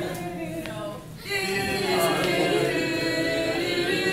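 Several voices singing a silly camp action song together, unaccompanied. The singing dips briefly about a second in, then carries on with long held notes.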